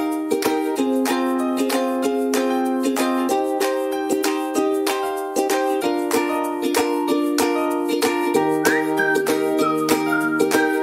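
Upbeat background music: plucked strings strummed in a steady, quick rhythm, with a high melody line and a bass line coming in near the end.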